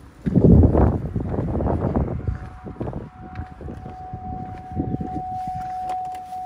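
Rumbling wind and handling noise on the phone's microphone with a few knocks as the SUV's door is opened, then a single steady high-pitched electronic tone that starts about two seconds in and holds without changing pitch.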